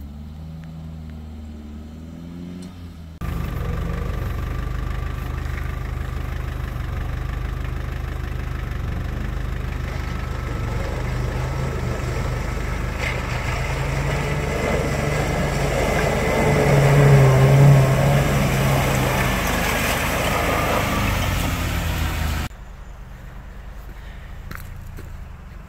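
An off-road 4x4's engine running as it drives along a muddy track. The sound jumps suddenly louder a few seconds in and swells to its loudest about three-quarters of the way through. It stops abruptly near the end.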